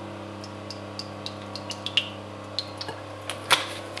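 Olive oil poured into a warm frying pan, with faint scattered ticks and a sharper click about three and a half seconds in, over a steady electrical hum.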